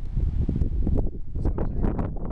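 Wind blowing across the microphone, a loud, steady low rumble.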